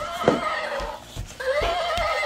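Toy horse neighing: a recorded horse whinny with a wavering pitch plays twice, the same call each time, with a few sharp clicks between.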